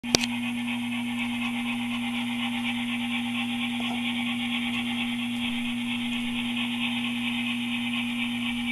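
Steady low electrical hum with a steady high whir above it, the running noise of N-scale model locomotives and their power supply on a layout; one sharp click right at the start.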